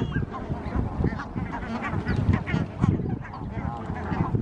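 Repeated short honking bird calls over a steady low background rumble.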